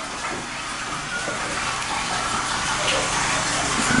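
Steady rush of running water, growing slightly louder, with faint voices in the background.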